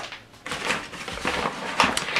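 Brown paper bag rustling and crinkling as a hand rummages in it for the next item, in irregular bursts from about half a second in.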